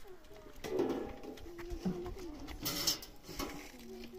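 A dove cooing a few low notes, with a short hiss a little under three seconds in.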